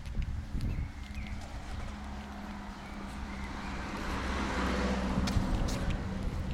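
Street sounds while walking: footsteps on stone paving over a steady low engine hum, with a rushing vehicle noise that swells about four seconds in and then eases off, as a car passes.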